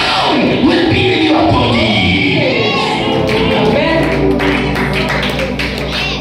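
Live church music: a man sings into a microphone over a Roland E-09 electronic keyboard. About halfway through, the voice drops away and held keyboard chords carry on under a run of sharp taps.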